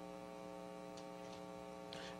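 Faint steady electrical hum, one buzzy tone with many evenly spaced overtones, with a few faint ticks.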